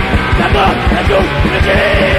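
Hardcore punk song playing: fast, pounding drums under dense band sound, with a shouted vocal line.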